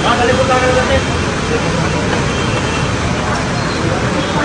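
Steady traffic-like street noise, with a voice talking briefly in the first second.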